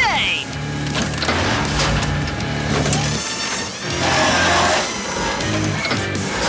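Cartoon background music with a stepping bass line, over digging sound effects: cracks and a scraping, crunching rush of earth about four seconds in.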